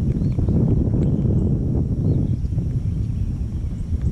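Wind buffeting the camera microphone: a loud, choppy low rumble.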